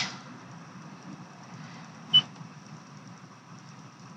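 Low, steady rumble of a car, with one short sharp click about two seconds in.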